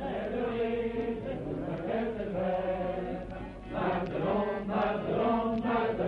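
A chorus of men's voices singing a soldiers' song together, with held notes.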